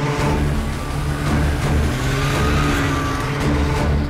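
Cartoon sound effect of motor vehicle engines running steadily. It comes in abruptly at the start.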